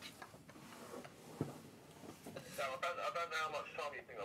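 Stifled laughter from young men trying to keep quiet: a near-quiet room with a few small clicks and a soft thump about a second and a half in, then a faint, high, wavering held-in laugh through the second half.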